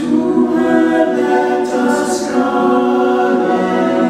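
A small mixed group of male and female voices singing a cappella in close harmony, holding long sustained chords.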